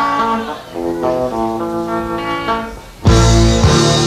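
Opening of a slow song by a live rock band: a guitar picks ringing notes on its own, then the drums and bass come in with the full band about three seconds in.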